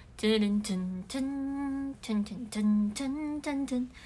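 A young woman humming a tune in a string of short held notes with brief breaks between them.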